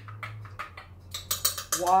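A spoon stirring liquid in a glass measuring cup, clinking quickly against the glass from about halfway through.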